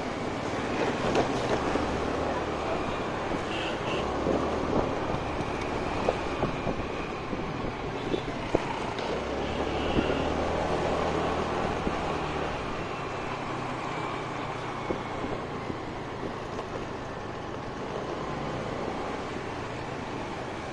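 Motor scooter riding along a street: a steady low engine drone under road noise, with wind rushing over the microphone and a few short knocks along the way.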